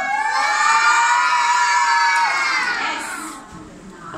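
A class of young children shouting out together in one long, drawn-out cry of surprise, rising at the start and fading away after about three seconds.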